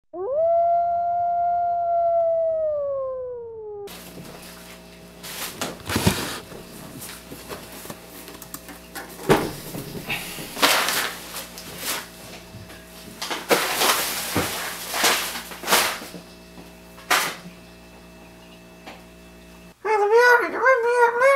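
A single long canine howl that rises at first and then slides slowly downward. After it, over a steady low hum, come rustling and several sharp knocks as a pumpkin is taken out of a fabric grocery bag and set on a wooden table.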